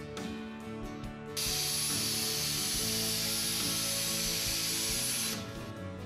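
Automated plasma torch cutting with nitrogen plasma and a water-mist secondary: a steady hiss with a thin high whistle in it, starting suddenly about a second and a half in and cutting off about four seconds later. Guitar background music plays under it.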